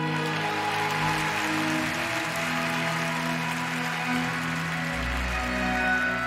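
Orchestral program music with sustained, string-like tones. Audience applause rides over it for the first few seconds and dies away about five seconds in.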